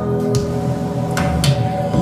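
Live band music with no voice: steady held instrumental tones at several pitches, with three or four sharp hits in the middle.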